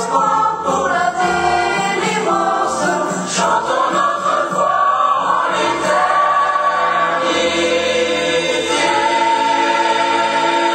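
A boys' choir, with older voices among them, singing a French song in full voice. The sung lines move for the first few seconds, then settle into long held notes from about seven seconds in.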